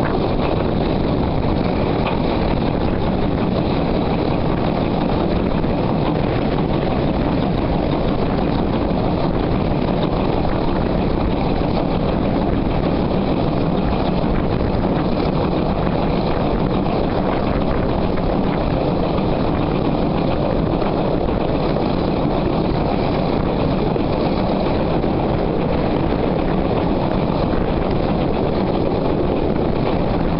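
Train on the move, heard right beside the working locomotive: a steady mix of running noise, wheel-on-rail sound and wind with an even low hum, no clear exhaust beat standing out.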